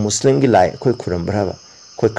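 A man speaking, pausing about a second and a half in, over a steady high-pitched trill of crickets in the background.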